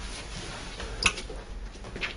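Quiet small-room background with a steady low hum and one short click about a second in.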